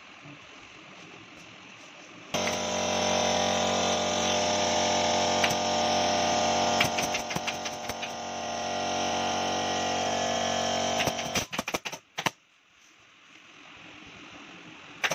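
An air compressor's motor kicks on about two seconds in and runs with a steady hum, then shuts off near eleven seconds. A pneumatic staple gun fires sharp clicks over it: a few together midway, then a quick string of them near the end.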